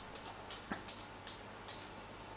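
Faint, irregular light clicks, about half a dozen scattered through a quiet room.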